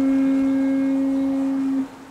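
A single long, steady held note at a low-to-middle pitch, with a fainter overtone an octave above. It stops shortly before the end.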